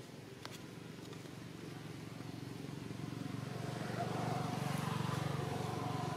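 A motor vehicle's low engine rumble growing steadily louder as it approaches, loudest near the end.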